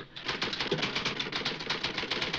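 Typewriter keys struck in a fast, continuous run of clicks.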